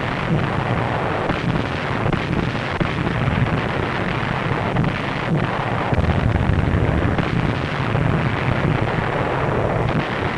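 Naval bombardment: a continuous, dense rumble of shellfire and shell bursts, heavy in the low end, with no clearly separate blasts. It comes through an old film soundtrack with little treble.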